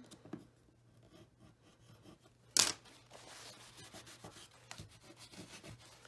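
Bone folder rubbing over a glued cardstock fold to burnish it down: soft, faint scraping, with one sharp tap about two and a half seconds in.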